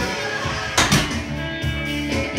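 Rock background music with guitar, and a sharp crash-like hit a little under a second in.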